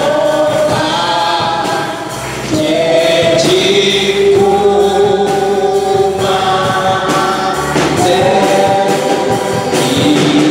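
A slow gospel worship song: a man singing long held notes into a microphone, with other voices singing along like a choir.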